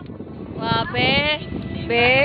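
Children's high-pitched shouts that rise in pitch, one about half a second in and another near the end, over outdoor background noise.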